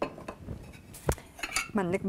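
Short clinks and knocks of kitchenware being handled on a countertop, a small metal pot among it, with one sharper knock about a second in.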